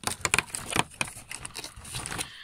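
Fingers tearing open a cardboard advent calendar door and pulling a small plastic toy engine out from behind it: a quick run of crinkling, tearing and clicking.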